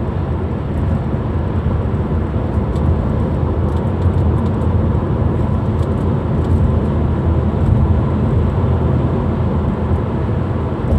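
Steady road and engine noise inside the cabin of a car driving at speed, a constant low rumble with no change in pace.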